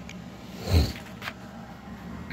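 A single short, low thump of the camera phone being handled as it is moved, about three-quarters of a second in, over a faint steady hum.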